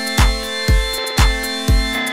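Electronic dance track: a steady kick drum beats about twice a second under held synthesizer chords.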